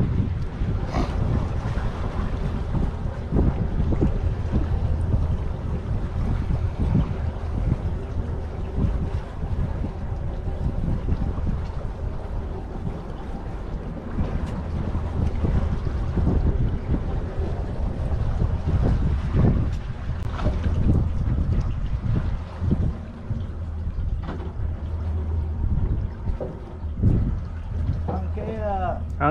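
Wind buffeting the microphone aboard a boat at sea: a steady low rumble that rises and falls, with a few faint knocks.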